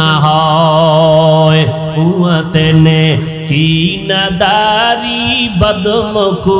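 A male preacher's voice chanting in the sung, drawn-out style of a Bangla waz sermon. He holds long notes with wavering ornaments and pauses briefly between phrases.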